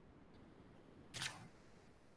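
A single short, sharp click-like noise about a second in, against a near-silent background.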